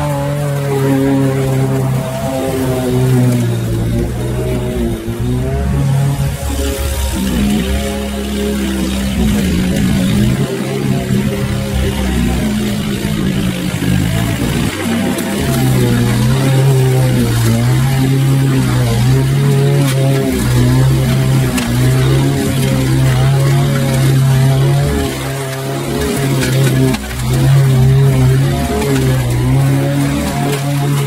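Gas walk-behind push mower engine running steadily as it cuts tall, overgrown grass, dipping briefly now and then under load, with background music over it.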